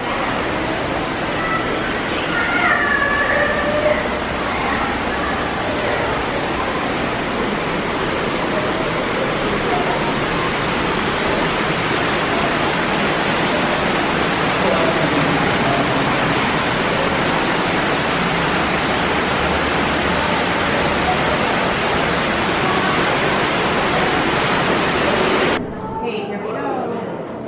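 A loud, steady rushing noise with faint voices in it, which cuts off suddenly near the end.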